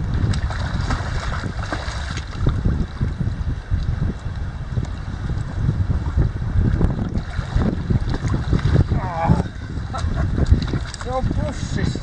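Wind buffeting the camera's microphone, a loud low rumble that rises and falls in gusts, over choppy sea water.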